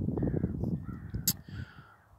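A crow cawing twice, harsh calls, with a sharp click about the middle and a low rumble underneath.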